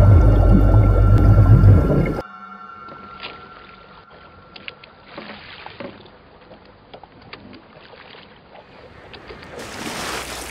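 Underwater ambience: a loud, deep rumble with steady held tones that cuts off suddenly about two seconds in. It gives way to quiet sea water lapping and splashing at the surface, with a rising rush of water noise near the end.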